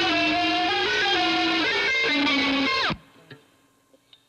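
Distorted fuzz electric guitar holding sustained notes that change about every half second. About three seconds in the pitch drops sharply and the sound cuts off abruptly, leaving only a couple of faint ticks.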